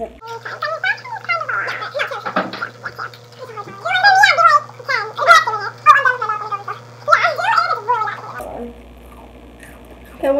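Girls laughing in several high-pitched bursts that rise and fall, broken by short pauses, which die away a little before the end.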